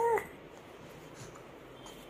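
A three-month-old baby cooing: one short coo right at the start, its pitch rising and then falling.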